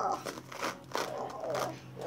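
Loose hair being pulled out of the bristles of a hairbrush: a few short crackling rips about half a second apart, with faint vocal sounds between them.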